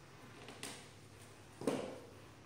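Quiet room with one short burst of voice about one and a half seconds in.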